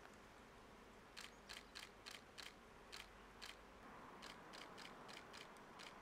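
Faint, irregular run of about a dozen short, sharp clicks over a low hiss, starting about a second in.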